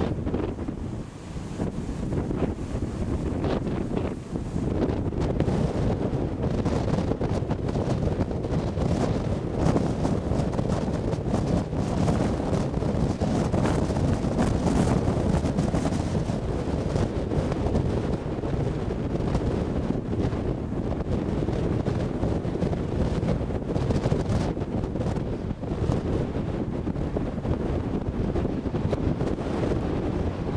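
Strong wind buffeting the camcorder microphone: a continuous low rumbling rush that eases briefly about a second in and again around four seconds.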